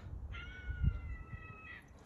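A single long, faint animal call, drawn out for about a second and a half and falling slightly in pitch. A low dull thump comes about a second in.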